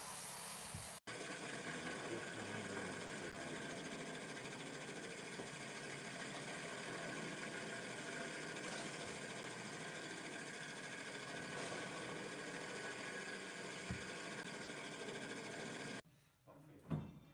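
Walk-behind floor grinding machine running steadily as it works a floor, with a momentary break about a second in.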